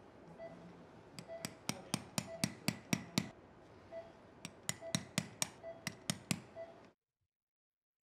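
A straight osteotome being tapped through the volar cortex of the distal radius: a series of sharp metal-on-metal taps, about three a second and unevenly spaced, that stop about a second before the end.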